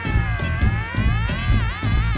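Instrumental passage of a mod-rock song: a lead tone that glides up and down in pitch and wobbles, over bass and drums.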